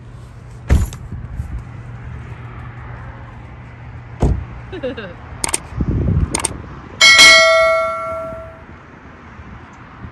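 A bell ding from a subscribe-button sound effect rings out about seven seconds in and fades over about a second and a half. It comes after a few short, sharp clicks, over a low background hiss.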